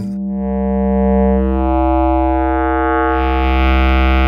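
ModBap Osiris digital wavetable oscillator holding one low, steady note as its wave position is turned through waves sampled from a Serge wavefolder. The tone starts close to a plain sine and turns brighter and buzzier about three seconds in, as the folded waves add upper harmonics.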